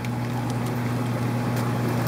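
Steady low hum over a constant hiss, the background noise of a fish room's running equipment.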